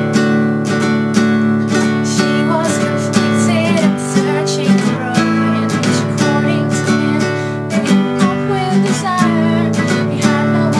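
Nylon-string classical guitar strummed in a steady rhythm of chords, with a young woman singing along over it.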